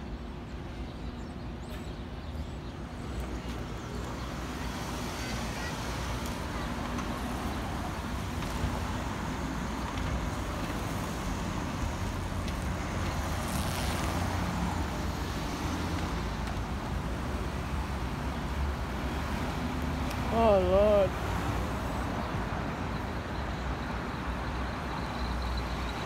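Street traffic: cars and a city bus passing, a steady rumble of engines and tyres that slowly grows louder. A short voice cuts in briefly about three quarters of the way through.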